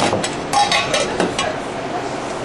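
Several quick clicks and knocks from handling utensils and ingredients at a sandwich counter in the first second and a half, over a steady background hum that carries on alone to the end.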